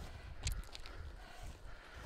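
Low wind rumble on the microphone outdoors, with a few light knocks about half a second in.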